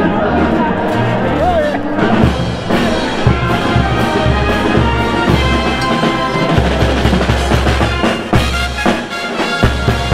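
Live Peruvian brass band (banda show) playing: sousaphones carry a shifting bass line under trumpets and saxophones, with a drum kit and bass drum keeping a steady beat.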